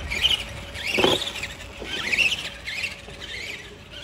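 Electric motor and drivetrain of a 4x4 Granite RC monster truck whining, rising and falling in pitch over and over as the throttle is worked. There is a thump about a second in.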